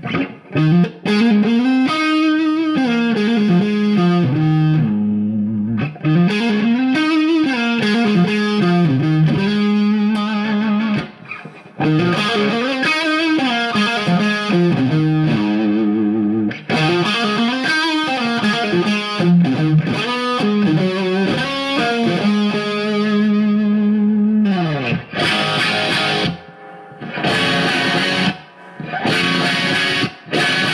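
Electric guitar played through a Mesa Boogie Triple Crown tube amp head and Mesa mini Rectifier cabinet, with a slightly dirty tone: flowing single-note lines with runs sweeping up and down and held notes, then short, chopped chords in the last few seconds.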